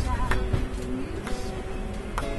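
A woman singing a long held note with acoustic guitar, marked by sharp hits about once a second, over the steady low rumble of a moving train carriage.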